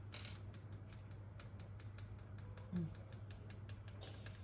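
Light, quick tapping, several faint taps a second, as fingers tap a small paper packet of icing sugar to shake the sugar out over freshly baked chocolate lava cakes in foil cups, over a low steady hum.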